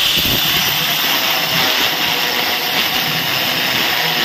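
Angle grinder fitted with a core bit running under load as it cuts a hole through a stone countertop: a loud, steady high whine with grinding noise.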